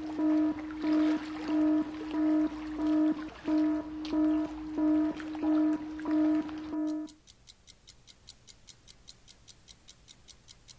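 A low electronic alarm tone beeping on and off at the same pitch, about one and a half beeps a second, that stops about seven seconds in. It gives way to a clock-like ticking, about three ticks a second.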